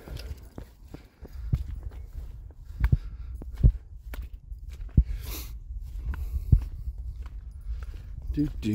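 Footsteps of a person walking on a grassy, muddy path: a few heavy thuds roughly a second apart, over a low rumble of wind on the microphone.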